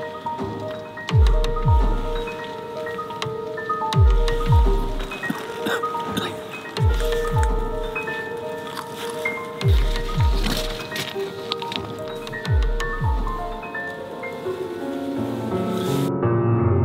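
Background music: a slow pulse of paired deep thuds, like a heartbeat, repeating about every three seconds under held and plucked notes. More notes come in near the end.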